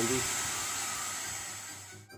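Hand-held hair dryer running with a steady hiss and a high whine, dying away toward the end as it is shut off.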